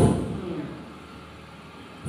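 A short pause in a woman's amplified speech: her last word fades out over the first second, leaving a low, steady background rumble.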